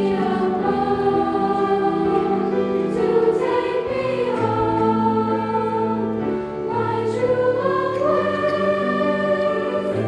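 Junior high girls' choir singing a sustained, multi-voice passage, accompanied on grand piano.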